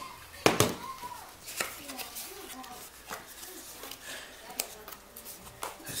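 Two sharp knocks about half a second in, then a few lighter taps and handling sounds. This is a camera body being set down on a hard tiled tabletop and a cardboard box being handled.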